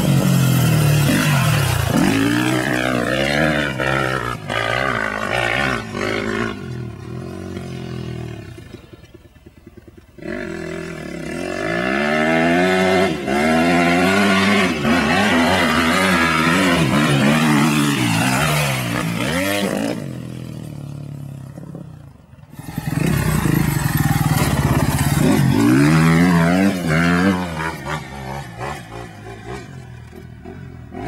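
250cc four-stroke single-cylinder motocross bike engine revving hard, its pitch climbing and dropping again and again as the rider works the throttle and shifts through the sand. It eases off twice, about eight seconds in and again a little past twenty seconds, before coming back on the throttle.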